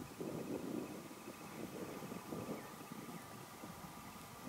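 Faint wind on a camcorder microphone covered by a furry windscreen, a soft uneven hiss with little rumble.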